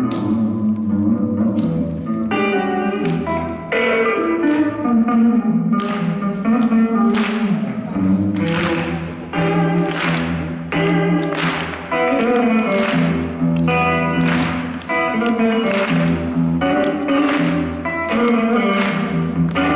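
Live band playing an instrumental passage on electric guitar and electric bass, with pitched plucked notes. From about six seconds in, sharp percussive strokes recur about once a second.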